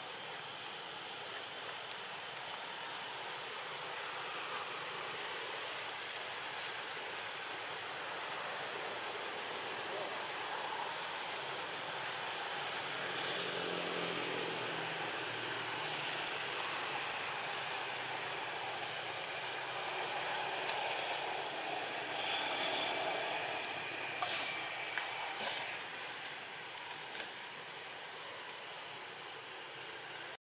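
Steady outdoor forest background noise with a thin high steady tone. A low pitched sound swells and fades about halfway through, and a few sharp clicks come near the end.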